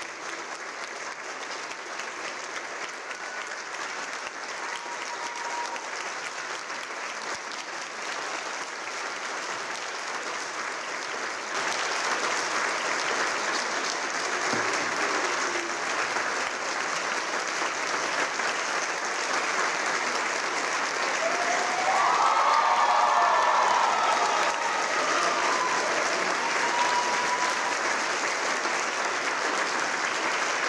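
Concert audience applauding steadily, growing louder about a third of the way in and loudest about two-thirds of the way through.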